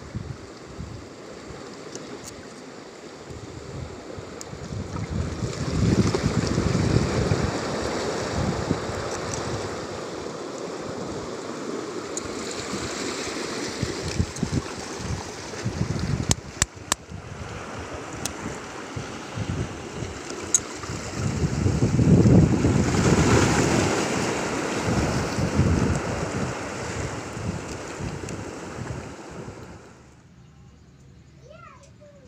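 Small waves washing against a rocky shore, swelling louder twice, about five seconds in and again after twenty seconds, with wind buffeting the microphone. A few sharp clicks of a metal pick against shell and rock come about halfway through.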